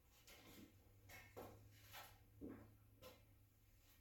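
Near silence: about six faint scuffs and light knocks as a person climbs onto and stands on a welded steel bed frame, over a faint steady low hum.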